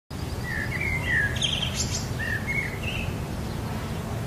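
Garden birds calling: a series of short chirps, several sliding down in pitch, over a steady low background hum.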